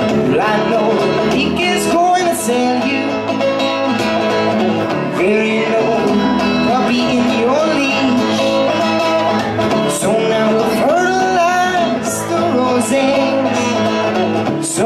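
Acoustic guitar strummed steadily in a live solo performance, with a man's voice singing a gliding melody over it.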